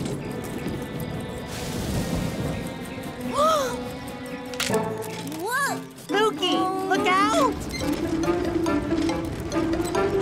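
Cartoon soundtrack music with several short, wordless rising-and-falling vocal sounds from a character in the middle, settling into steadier held notes near the end.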